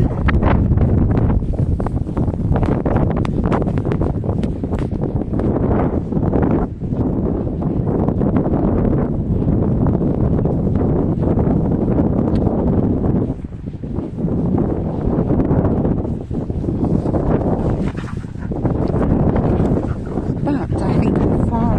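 Wind buffeting the microphone: a loud, steady low rumble that dips briefly a few times.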